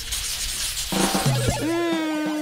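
Edited-in transition sound effect: a noisy swish for about a second, followed by short pitched musical notes, one of them held.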